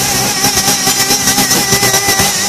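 Live rock band playing loud, with distorted electric guitars, bass and drums. A high note is held through it, wavering in pitch, over quick, even cymbal and drum strokes.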